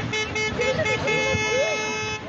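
Car horn honking, first in a run of short rapid toots and then held in one long steady blast over the second half, with voices over it.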